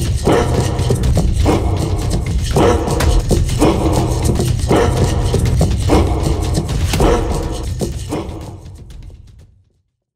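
Short shouts repeated in rhythm about once a second, voices calling with arms raised in an Osho-style active meditation, over amplified music with a heavy steady beat. It all fades out to silence near the end.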